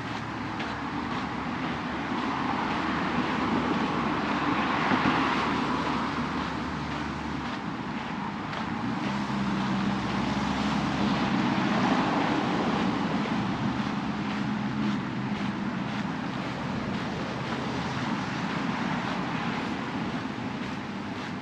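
Road traffic passing beside the path: car noise that swells and fades twice, with a low engine hum underneath.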